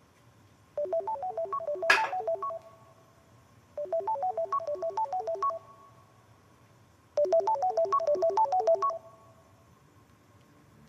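Mobile phone ringing with a melodic ringtone: a short run of quick notes, played three times with pauses between. A sharp knock sounds about two seconds in, during the first ring.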